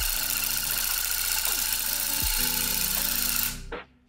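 Handheld electric tufting gun running against the rug backing, its motor and needle action punching yarn into the cloth. The motor speed dips briefly about two seconds in, then the motor winds down with a falling pitch and stops near the end as the trigger is let go.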